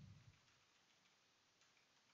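Near silence: room tone, with a few faint computer keyboard clicks from typing.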